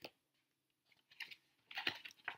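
A picture book's page being turned by hand: a soft rustle at first, then a quick run of sharp paper rustles and slaps in the second half as the page flips over and is smoothed flat.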